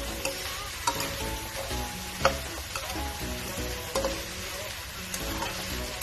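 Prawns and asparagus sizzling in a frying pan while being stirred with a spatula, which clicks and scrapes against the pan a few times, most sharply about two seconds in.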